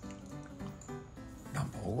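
Soft background music with a few held notes, under a pause in the talk; a man's voice comes back in near the end.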